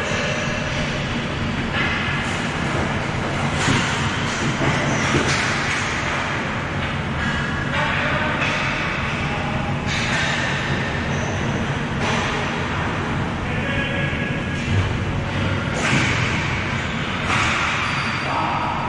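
Ball hockey game sounds in a large, echoing indoor rink: distant players' voices and play noise over a steady rumble.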